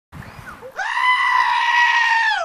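A goat gives one long, loud, human-like scream of a bleat. It starts about three-quarters of a second in, swoops up quickly, and then holds a high, steady pitch.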